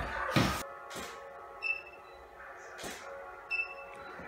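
Sharp camera shutter clicks, one loud just after the start and fainter ones later, and two short high electronic beeps of a camera's focus confirmation about two seconds apart, over faint background music.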